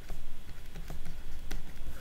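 Pen stylus tapping and scratching on a tablet surface during handwriting, a few separate irregular clicks.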